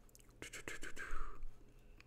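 A short, quiet breathy whisper close to a headset microphone, with a few faint clicks between about half a second and a second and a half in.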